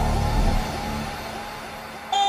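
Dubstep music: a deep sustained bass note that drops in level about half a second in and then fades, with a hissing sweep above it.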